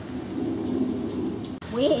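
Low, rough rumbling noise that swells and then cuts off suddenly about one and a half seconds in; a man starts speaking just before the end.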